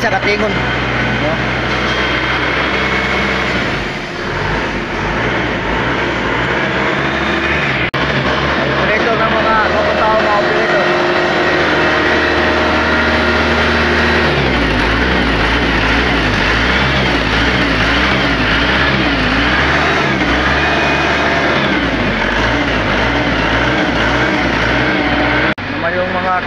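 Loud, steady factory machinery noise with a low hum that shifts about 4 seconds in and again about 14 seconds in, with indistinct voices mixed in.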